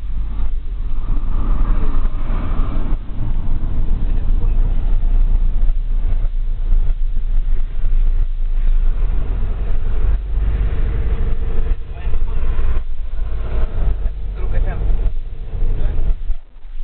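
Inside a moving vehicle's cabin: steady low engine and road rumble while driving, with muffled voices in the background at times.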